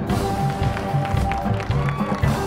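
High school marching band playing: held wind notes over repeated low drum strikes.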